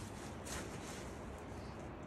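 Steady low background noise, with one faint tap about half a second in.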